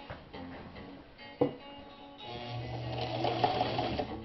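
A single click, then about two seconds in a Sewmor Class 15 sewing machine's electric motor starts and runs steadily, stitching through denim.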